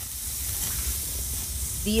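Bratwursts sizzling on a propane grill's grates: a steady hiss that fades in.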